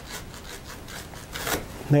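Sharp knife sawing back and forth through a banana plant's thick, juicy pseudostem. A louder, sharper stroke comes about one and a half seconds in as the blade cuts through.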